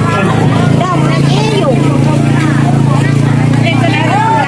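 A car engine idling with a steady low hum, under people talking.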